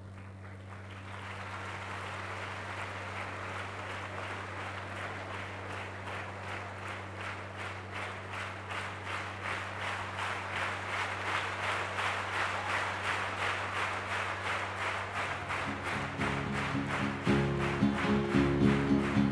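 An audience clapping in unison, about three claps a second, slowly growing louder. Near the end, instrumental music with held notes comes in under the clapping.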